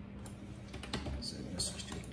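Computer keyboard typing: a few separate keystrokes, coming quicker in the second half, over a steady low hum.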